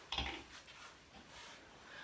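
A clothes hanger knocking against a closet rail with a rustle of jacket fabric, a short clatter just after the start, then faint handling noise.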